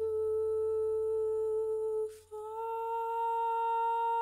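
A woman's voice humming long held notes, one note, a quick breath about two seconds in, then a second note held to the end, over a low accompaniment tone that fades away.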